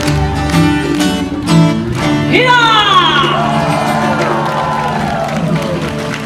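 Live folk band of yueqin (moon guitar), acoustic guitar and cello playing the strummed closing bars of a song. About two seconds in the rhythm stops on a held final chord that slowly fades, with a voice crying out and sliding down in pitch over it.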